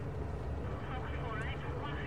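Steady low rumble of a taxi's engine and tyres, heard from inside the cabin as it drives. A faint voice talks about a second in.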